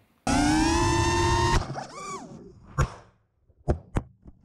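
FPV racing quadcopter's brushless motors whining at high throttle, the pitch creeping up, then cutting off suddenly as the quad crashes. A few brief whirs and several sharp knocks follow.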